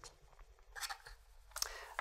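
Faint clicks and a brief scrape of a small screwdriver driving a screw through a metal drive carrier into a 2.5-inch SSD.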